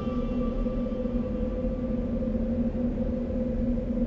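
Background score of a TV drama: a low note held as a steady drone while the higher notes fade away.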